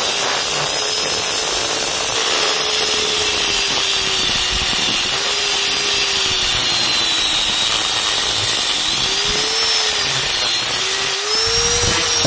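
Electric angle grinder with a cut-off disc cutting through a hardened steel piston pin, a steady loud grinding hiss. The motor's pitch wavers, dipping and recovering a few times as the disc works through the metal.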